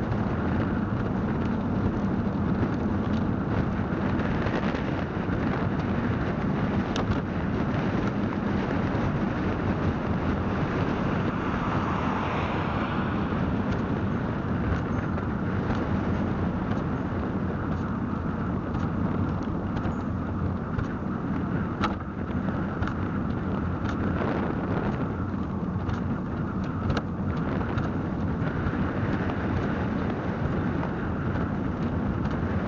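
Velomobile rolling along a paved street: steady tyre rumble and wind noise through the fairing, with a few light clicks.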